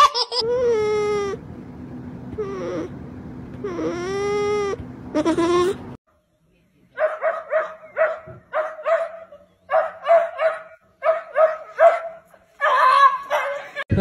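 A small dog whining in long, wavering high-pitched cries that rise and fall. After a short silence comes a quick series of short, repeated calls, about two a second.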